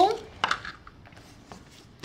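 A single short knock about half a second in, followed by a few faint ticks and rustles, as a paper-crafting grid paper mat is pulled across a countertop.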